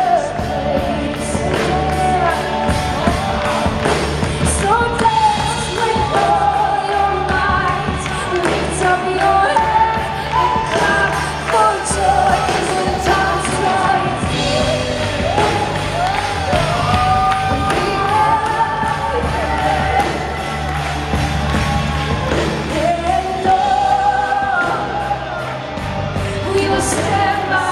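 Live worship music: a woman singing lead over a full band, with a steady bass line and drums keeping the beat.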